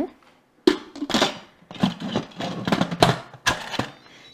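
Instant Pot pressure cooker lid being set onto the pot and twisted into its locked position: a sharp click about half a second in, then a series of scrapes and knocks of the lid against the pot's rim.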